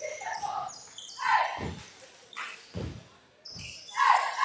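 Basketball dribbled on a hardwood gym floor: low bounces about a second apart, with voices echoing in the gym.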